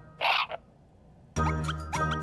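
A short raspy cartoon sound effect, then a near-silent pause, and about one and a half seconds in, light children's background music with plucked notes starts again.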